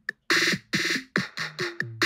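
A programmed trap-style beat playing back from GarageBand: a Boutique 808 bass line holds low notes under drum-machine kick and clap hits, with other instruments layered on top that make the bass harder to single out.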